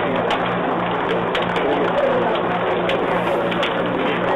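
Steady low electrical hum and hiss from a fixed field camera's microphone, with faint wavering sounds and scattered light ticks over it.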